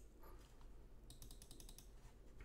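Faint computer keyboard typing: a quick run of light clicks in the second half over near-silent room tone.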